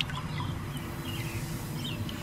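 Low steady outdoor background noise with a few faint, short, high chirps scattered through it.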